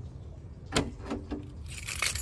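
Keys jingling on a ring, with a few sharp metallic clicks about a second in, as a hand works the rear liftgate handle of a Jeep Liberty. A high rustling noise starts near the end.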